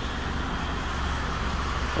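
Steady low hum with an even hiss of background machinery, with no sudden events.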